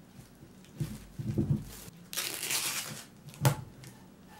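A woven plastic sack rustles and crinkles as logs are pulled out of it, with a few dull knocks of the logs on the wooden workbench.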